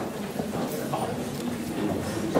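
Indistinct crowd chatter in a hall, with scattered short clicks and knocks throughout.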